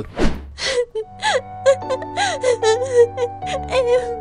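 A woman's voice sobbing and gasping in short, wavering cries over soft, slow background music with long held notes that enters about a second in. There is a brief rushing sweep at the very start.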